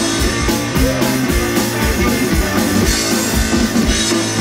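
Live rock band of guitar, bass guitar and drum kit playing a loud, steady, driving passage.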